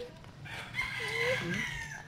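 A rooster crowing once: a single long crow starting about half a second in and lasting about a second and a half, held steady and dropping slightly at the end.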